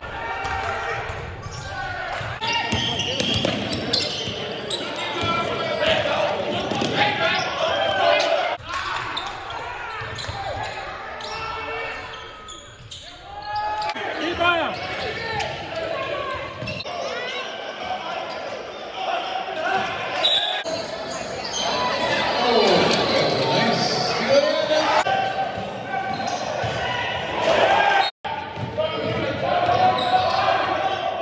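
Live sound of a basketball game in a gym: the ball dribbling on the hardwood court amid players' and spectators' voices, echoing in the large hall. The sound breaks off sharply twice where clips are spliced.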